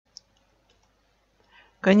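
A single short, sharp click just after the start, then near silence until a voice starts speaking near the end.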